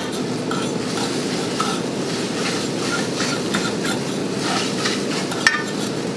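Egg scrambling in a hot frying pan over a gas burner: a steady sizzle, with a cooking utensil lightly scraping and tapping the pan and one sharper knock near the end.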